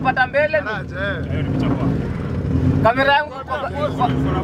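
A car engine idling steadily under people talking nearby.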